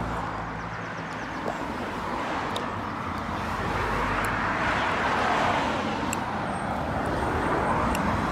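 Road traffic: a car passing on the street, its tyre and engine noise swelling to a peak about halfway through and easing off again.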